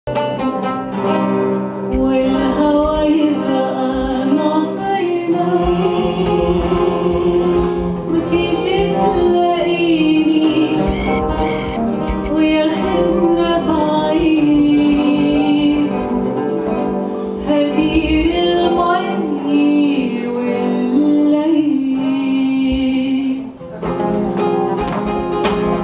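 Live Arabic song: a female singer's melody line accompanied by oud and classical guitars plucking. Her sung phrase ends just before the end, leaving the strings.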